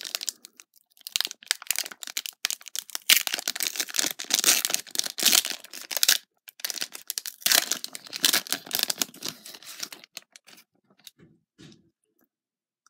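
Plastic wrapper of a basketball trading-card pack being torn open and crinkled, in two long crackling stretches with a short pause between, then a few faint ticks near the end.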